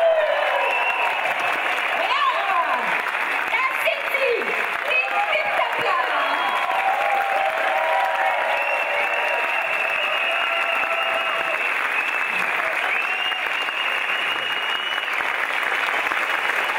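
Audience applause at a steady level, with voices calling out over it.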